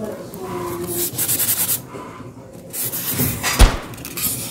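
Toy blocks being handled and pulled out of styrofoam packing: two stretches of rubbing and scraping, then a sharp knock about three and a half seconds in.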